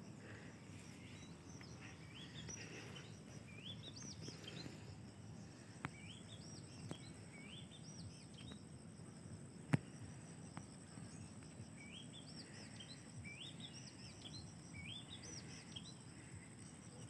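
Faint outdoor ambience: a bird calling in two bouts of short rising whistled notes, over a steady high insect drone. A few isolated faint clicks, the sharpest about ten seconds in.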